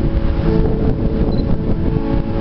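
Loud, steady low rumble on the camera's microphone, with faint held musical tones underneath.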